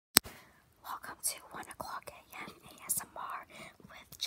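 A girl whispering close to the microphone, in breathy bursts of words. A single sharp click at the very start is the loudest sound.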